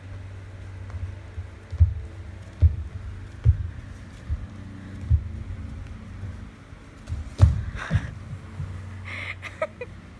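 A dancer's feet stepping and landing on a studio dance floor: dull low thumps, roughly one a second, the loudest about seven and a half seconds in, over a steady low hum, with a few light clicks near the end.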